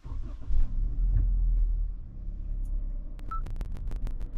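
A Toyota car's engine starting with a sudden low rumble that swells for a second or so, then settles to a steadier idle. A short beep and a run of sharp clicks follow about three seconds in.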